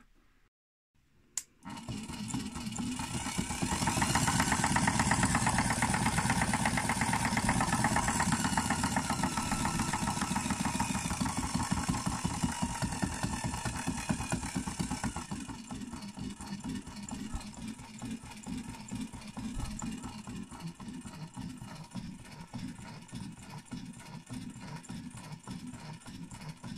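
A click, then the Wobble Dog 9003i sausage-wobbling machine's motor starts and runs steadily, driving its crank arm back and forth. It is loudest for the first half and runs quieter for the rest.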